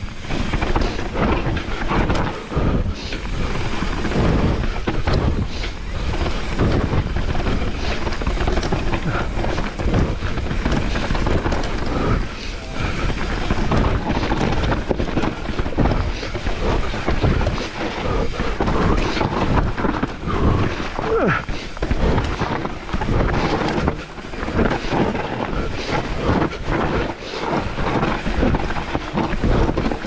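Mountain bike riding fast down a rough dirt forest trail: a continuous low rumble of tyres on dirt and wind on the microphone, broken by frequent knocks and rattles as the bike goes over roots and rocks.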